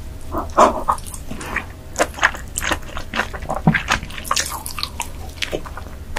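Close-miked wet mouth sounds of eating king crab: irregular smacking, slurping and chewing clicks.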